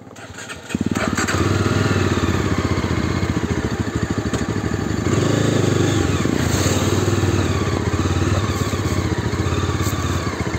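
Yezdi Adventure's single-cylinder engine starting about a second in, then running at a steady idle with an even, rapid low pulse.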